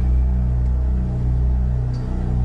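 Live band holding deep, steady low bass notes in an instrumental gap with no singing.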